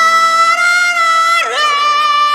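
A woman singing a long, high held note into a microphone, then dipping and sliding into another held note near the end, over a quiet band accompaniment.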